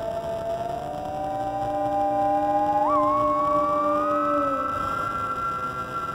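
Layered Harrison Instruments theremins playing sustained, gliding notes. A higher line climbs slowly, with a quick upward scoop about halfway through, over lower held notes that fade out about three-quarters of the way in.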